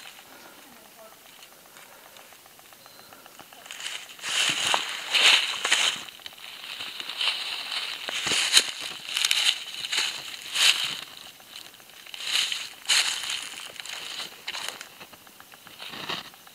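Footsteps crunching through dry vegetation at a walking pace, a crunch every half second to second. They start about four seconds in, after a quiet stretch.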